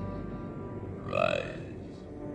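Slow, dark orchestral film score with long held notes. About a second in, a single short word in a man's voice cuts across it, its pitch rising then falling; this is the loudest moment.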